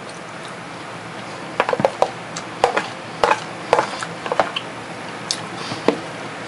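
A person chewing a mouthful of rehydrated freeze-dried granola with blueberries and milk. Irregular short crunches and wet mouth clicks come every few tenths of a second from about a second and a half in, thinning out near the end.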